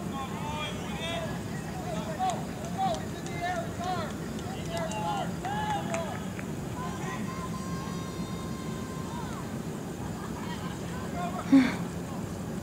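Voices of soccer players and spectators calling out, heard at a distance over a steady background rumble, with a short loud burst near the end.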